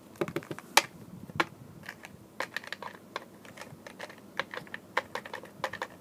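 Irregular run of light clicks of keys being typed on a computer keyboard, with a couple of sharper taps in the first second and a half.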